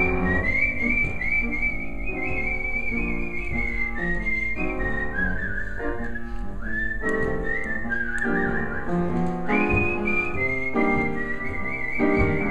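A man whistling a melody into a microphone over piano accompaniment. The whistled line is high and wavering with trills, sinking lower in the middle and climbing back up about two-thirds of the way through.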